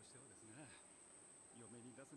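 Near silence: a man's voice speaking faintly about half a second in and again near the end, over a thin, steady high-pitched whine.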